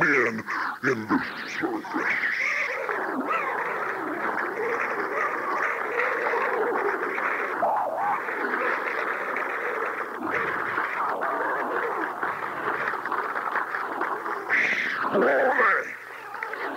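A steady clamour of many voices at once: a Pentecostal congregation shouting and praising together, with no single speaker standing out.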